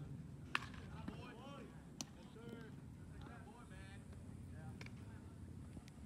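Faint, distant voices calling across a ball field, too far off to make out, with two sharp knocks about a second and a half apart near the start.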